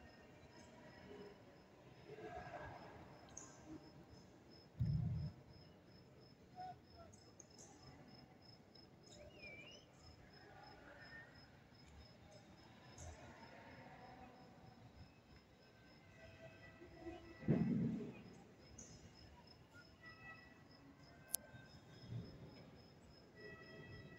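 Faint distant outdoor background with an evenly pulsing, high-pitched chirp throughout. Two short dull thumps come about five seconds in and again about seventeen seconds in.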